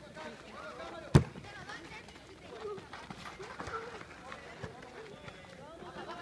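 A football kicked hard once, a single sharp thud about a second in, over the players' shouts and calls across the pitch.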